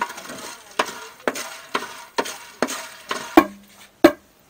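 Coffee beans being stirred with a stick in a roasting pan over a wood fire: a scraping rattle about twice a second over a steady hiss, as the beans are dark-roasted until black.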